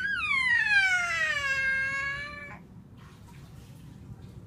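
A cat's single long meow, lasting about two and a half seconds, starting high and sliding steadily down in pitch.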